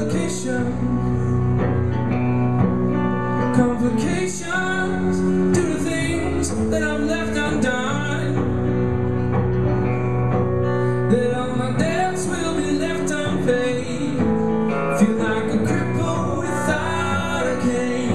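A three-piece band playing acoustic guitars live, a continuous song passage of sustained notes and chords.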